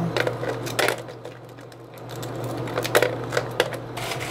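Small pieces of lava rock dropped by hand into a small plastic water bottle, each landing with a light click: a few in the first second, a quiet gap, then a quick run of clicks about three seconds in.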